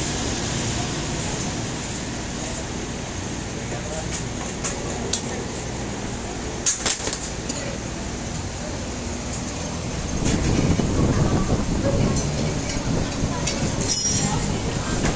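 Steady background traffic noise, with a few light clicks and taps from hands working at a bicycle tyre's valve.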